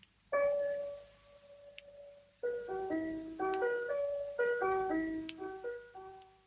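A piano being played: one note struck about a third of a second in and left to ring for about two seconds, then a quick run of notes in a simple tune.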